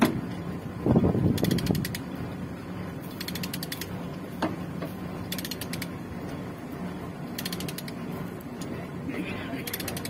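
Ratchet chain binder being worked to tension a load chain: its pawl clicks in quick runs about every two seconds as the handle is swung. A heavier clank comes about a second in.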